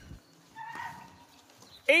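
A voice counting drill repetitions aloud, each number called in a long, falling drawn-out tone; the next number starts just before the end. In the gap between calls there is only a faint, brief sound.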